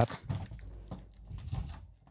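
Thin plastic wrapping bag crinkling and rustling in the hands as a small control dial is worked out of it: quiet, irregular rustles with small ticks.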